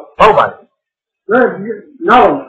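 Only speech: a man's voice giving a talk in short phrases with pauses between them.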